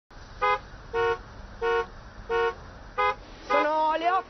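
A car horn honking five short times in a row at the same pitch, in congested traffic.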